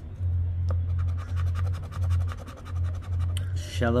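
Scratch-off lottery ticket being scratched, the coating scraped away in a rapid run of many quick strokes, about a dozen a second, that stops shortly before the end. A steady low hum runs underneath.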